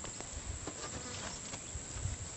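Steady drone of buzzing insects, with faint scattered clicks and scuffs.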